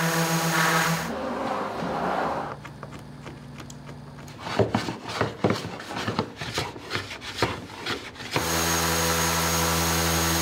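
Festool random orbit sanders running on a walnut tabletop with a steady hum. In the middle comes a run of repeated back-and-forth hand strokes rubbing over the wood, and a random orbit sander hums again near the end.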